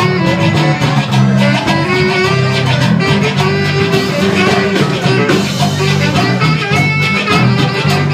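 A live band playing, with guitars and a bass line over a steady beat.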